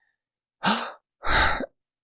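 A man giving two short, breathy 'hhha' exhalations, a sound of surprise and admiration.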